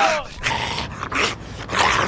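Snarling growls from people playing zombies, coming in rough short bursts, the loudest near the end. A wailing cry falls away in pitch at the start.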